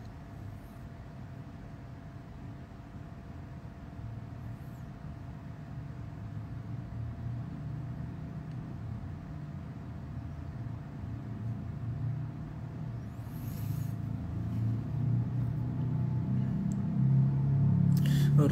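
A low rumble that slowly builds louder, with a faint steady hum underneath.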